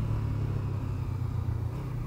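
Honda CBR500R's parallel-twin engine running with a steady, low drone under way, over a haze of wind and road noise.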